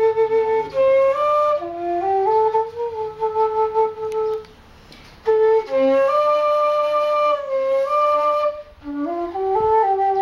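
Homemade tiêu, a Vietnamese end-blown bamboo flute, playing a melody of held notes that step up and down. It comes in two phrases, with a short pause for breath about halfway through.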